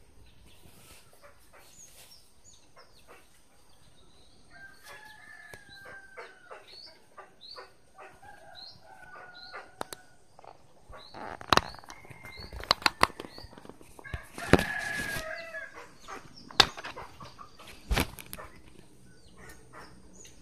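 Plastic back cover of a Samsung Galaxy J1 mini being pried off by hand: a run of sharp clicks and snaps in the second half, with one longer scraping rattle, over handling noise. Birds chirp over and over in the background, loudest in the first half.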